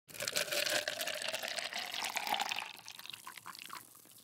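Liquid poured into a cup, the tone rising as the cup fills. It fades out about two and a half seconds in, leaving a few faint drips.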